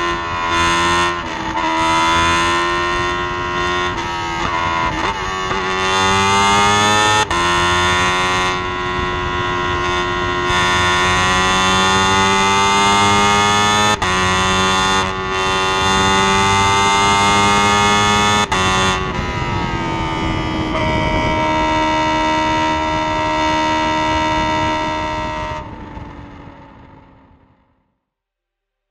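Single-seater racing car's engine heard onboard, accelerating in several pulls with the pitch climbing and dropping sharply at each upshift. Near the end it holds a steady note, then fades out.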